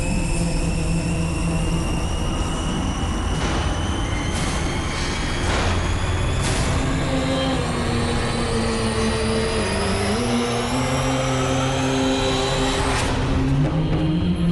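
Cinematic intro soundtrack: held low droning notes under several sharp hits, with a sweep rising in pitch through the second half that ends in a hit about a second before the end.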